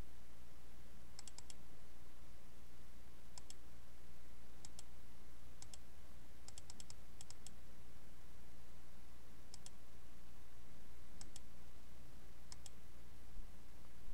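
Computer mouse button clicks, mostly in quick press-and-release pairs, coming about eight times at irregular intervals over a steady low hum from the computer.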